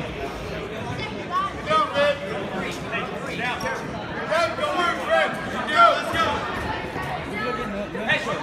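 Mixed voices of spectators and coaches talking and calling out, overlapping chatter in a gymnasium.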